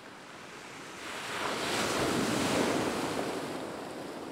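Sea surf breaking on the shore: a rush of wave noise that swells about a second in, peaks, and then slowly ebbs.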